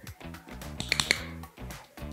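Background music, with a quick cluster of sharp clicks about a second in from a dog-training clicker, marking the puppy for dropping into a down.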